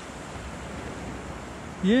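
Shallow sea water washing around the wader's legs in a steady, even hiss. A man's voice cheers right at the end.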